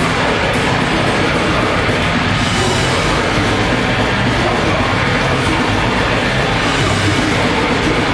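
Swedish death metal band playing live at full volume: distorted electric guitars, bass and drums with vocals, continuous and dense. It is heard from the audience through a camcorder's microphone.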